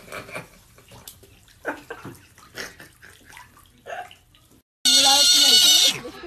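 An otter calling in loud, high squeals that waver up and down in pitch, starting just under a second before the end. Before that there are only faint, scattered short sounds.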